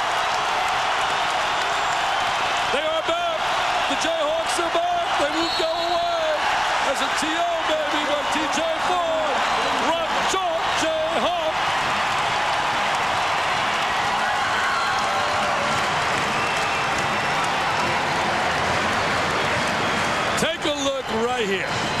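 Home basketball crowd cheering in a continuous loud roar of many voices, with whoops through it, in reaction to a long three-pointer that has just gone in.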